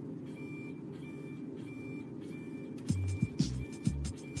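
Electronic beeps from an ESM301 motorized force test stand, an even high tone repeating about twice a second, starting just after a button on its control panel is pressed. Background music with a bass line comes in about three seconds in.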